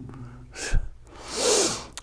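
A man's sharp intake of breath, lasting under a second and picked up close on a clip-on lapel microphone, preceded by a short click.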